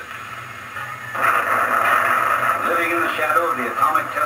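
A man speaking on an old, thin-sounding film soundtrack, the voice starting about a second in after a brief lull, over a steady low hum.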